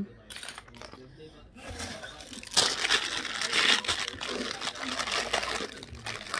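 A clear plastic bag crinkling as it is handled and pulled open, starting about a second and a half in and loudest in the middle.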